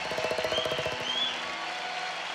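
Studio audience clapping and cheering as the band's closing music fades out in the first second, with a couple of short whoops.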